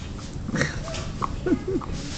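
Dog chewing a treat: a few short clicks of chewing, and about halfway through a few brief pitched little vocal sounds from the dog.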